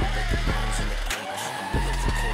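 Drift cars sliding, engine revving and tyres squealing, mixed under hip-hop music with a heavy bass beat. The bass drops out briefly about a second in.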